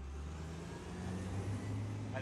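Engine of a large farm harvester running, a low steady hum that swells in and grows slightly louder.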